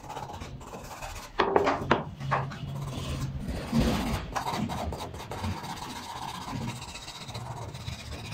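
Sandpaper rubbing by hand over a small carved wooden sculpture, in irregular scraping strokes. A few quick, louder strokes come between about one and a half and two and a half seconds in.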